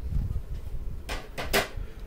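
Hard plastic card-grading slabs being handled: low rubbing at first, then three short clacks a little after a second in as one slab is put aside and the next is taken up.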